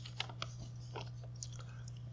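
A sheet of paper being picked up and handled, giving a few faint rustles and crackles, over a steady low electrical hum.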